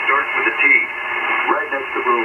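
A voice received over single-sideband on an Icom IC-7300 tuned to 20 meters, heard through the radio's speaker. The speech sounds thin and narrow, with a steady hiss behind it.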